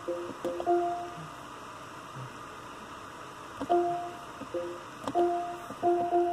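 Lexus infotainment touchscreen giving short electronic confirmation beeps as the heated and ventilated seat controls are tapped: about six brief two-tone beeps, each starting with a click, with a pause of a couple of seconds in the middle.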